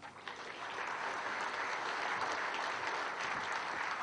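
Large audience applauding, the clapping building up over the first second and then holding steady.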